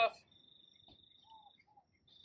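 Cricket trilling steadily on one high note, breaking off near the end.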